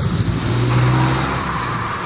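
A motor vehicle passing on the road, its engine hum swelling and then fading away within about a second, over wind rumble on the microphone.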